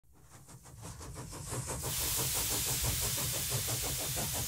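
A steam engine running, with a quick, even beat of exhaust and a hiss of steam. It fades in from silence over the first two seconds, then holds steady.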